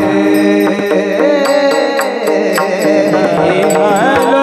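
Devotional Varkari kirtan singing: a man's voice singing a gliding melody over a steady drone, with small brass hand cymbals (taal) struck in an even rhythm.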